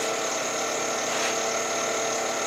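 Wood lathe running steadily at turning speed, an even machine sound with a few constant tones.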